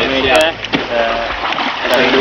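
Voices talking in short phrases over a steady wash of small waves at the shoreline.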